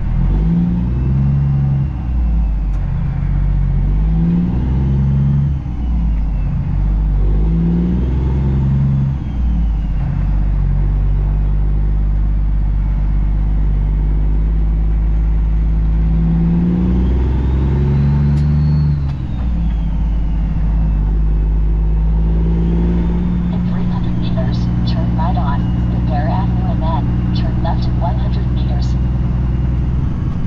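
Semi truck's diesel engine heard from inside the cab, pulling away and working up through the gears. The engine note climbs and drops with each shift several times in the first ten seconds, climbs and drops once more near twenty seconds, then runs steady.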